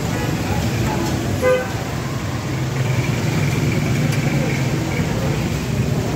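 Busy street noise: a steady traffic rumble with a short vehicle horn toot about a second and a half in, under background voices.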